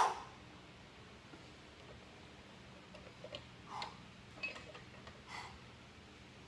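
A single loud hand clap at the start, then a few short, sharp breaths through the nose and mouth spread over the second half as the lifter readies himself at the bar.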